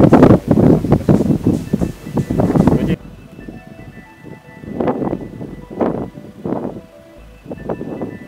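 A man's voice speaking for about three seconds, then cut off abruptly. Quiet background music with steady held tones and a few swelling notes follows.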